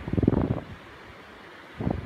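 Wind buffeting the microphone in gusts, a low rumble that swells strongly at the start, eases to a steady hiss, and gusts again near the end.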